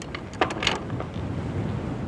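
Strong wind buffeting the microphone on a yacht's bow at anchor, a steady low rumble over choppy water. There are two short sharper sounds about half a second in.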